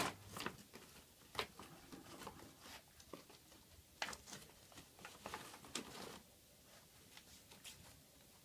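Dog nosing through torn scraps of a plastic dog-food bag: irregular crinkling rustles and sharp crackles, loudest right at the start, then scattered through the first six seconds and quieter near the end.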